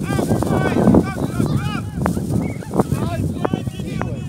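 Overlapping high-pitched shouts and calls from young players and spectators around a youth football pitch, with wind rumbling on the microphone.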